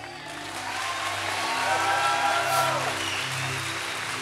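A congregation applauding and cheering, with whoops, swelling over the first two seconds and then easing, over soft sustained keyboard chords from the background music.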